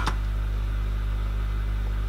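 Steady low electrical hum in the recording, with no other sound over it.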